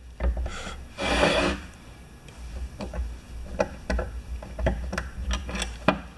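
A metal hand tool scraping and clicking in the valve pocket of a pressure-washer pump head while a stuck valve part is worked at: one longer scrape about a second in, then a run of small clicks and taps.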